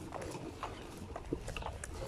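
Quiet outdoor background with a few faint, irregular light taps on asphalt.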